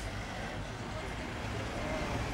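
Road traffic passing close by: a van and a car driving past with engine rumble and tyre noise, and a lorry's low engine rumble swelling a little near the end.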